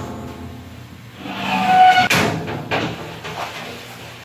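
A large 3/16-inch 5052 aluminum sheet sliding and scraping across the waterjet table, a rushing scrape that swells to its loudest about two seconds in, with a metallic ring from the sheet.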